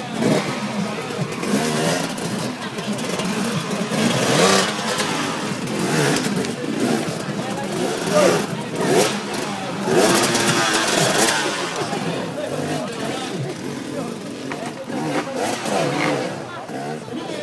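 Off-road motorcycle engine revving up and dropping back repeatedly as the rider works the bike over obstacles, with people's voices mixed in.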